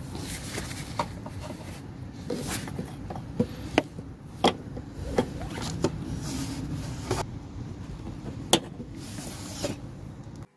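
Scattered sharp clicks and taps of pliers and hand tools working a coolant-hose clamp under the throttle body, over a steady low background rumble.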